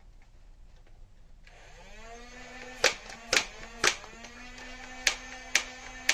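Motorized foam-dart blaster firing in three-round burst mode. Its motor spins up with a rising whine about a second and a half in and keeps running, while the blaster fires two bursts of three sharp clacks, about half a second apart.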